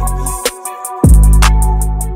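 Trap instrumental beat: long sustained 808 bass notes under a repeating melody and hi-hats. The bass drops out briefly about half a second in, then comes back with a heavy hit just after the first second.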